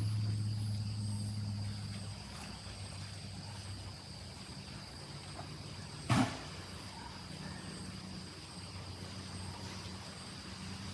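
Outdoor ambience: a low motor hum, loudest in the first two seconds, then fading and coming back faintly, under a steady high-pitched insect drone. A single sharp knock comes about six seconds in.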